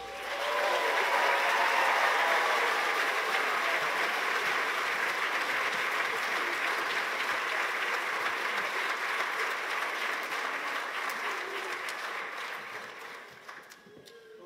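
Audience applauding, building up quickly at the start and tapering off near the end.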